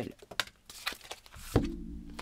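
A few light clicks of handled cards, then a single thump about one and a half seconds in as a deck of oracle cards is set down on a tabletop.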